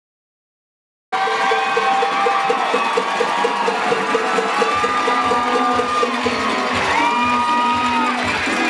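Dead silence for about a second where the track is muted, then the sound cuts in suddenly on a crowd cheering and whooping over dance music with a quick, steady beat. A heavier bass beat joins a little past halfway.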